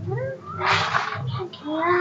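A cat meowing several times in short bending calls, with a brief hiss-like noise about halfway through.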